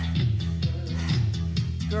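Background workout music with a steady beat and a repeating bass line.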